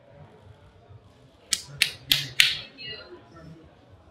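Four sharp snaps in quick succession, about three a second, over faint room murmur.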